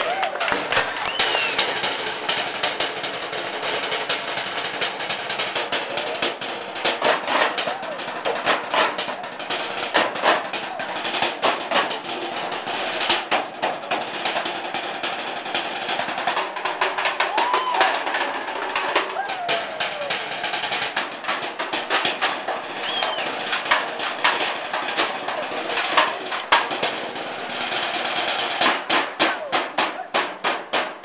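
Drumsticks beating a fast, continuous percussion routine on galvanized metal trash cans and their metal lids, a dense run of sharp strikes with drum-roll passages.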